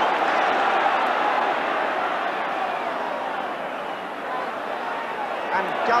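Large football stadium crowd making a continuous din of voices, loudest at the start, easing a little in the middle and lifting again near the end.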